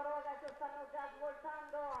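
A faint, drawn-out voiced sound at a nearly steady pitch, like a held hesitation 'eeh' or hum from the race commentator.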